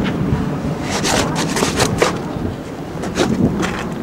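Wind noise and handling noise on a camcorder's built-in microphone: a steady low hiss, with several short rustling scrapes between about one and two seconds in and again just after three seconds.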